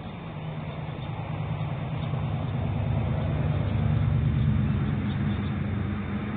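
A motor vehicle's engine hum that grows louder to a peak about four seconds in and then fades, as a vehicle passing by.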